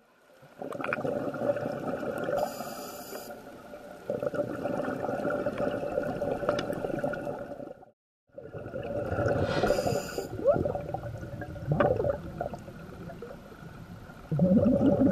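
Underwater sound of scuba breathing through a regulator, with exhaled bubbles gurgling. It comes in uneven surges and breaks off briefly about eight seconds in.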